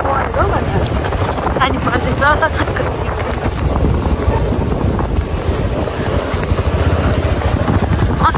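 Motorbike riding along at night: steady wind rush on the microphone over the bike's running noise. Faint snatches of voice come through in the first couple of seconds.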